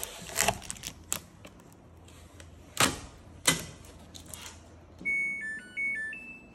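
A few sharp knocks and taps of handling, then, about five seconds in, the Samsung WW80TA046AX front-loading washing machine's electronic power-on chime: a short tune of clean beeps stepping up and down in pitch as the power button is pressed.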